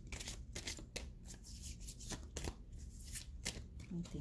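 A deck of cards being shuffled by hand: a run of quick, irregular snaps and slides of card against card.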